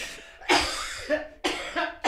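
A person coughing: a harsh cough about half a second in, then a second, shorter one near the end.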